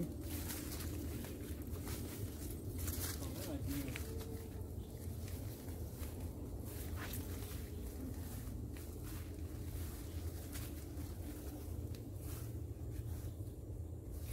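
Footsteps and the rustle of tall grass as people walk along an overgrown path: irregular soft steps and swishes over a steady low rumble.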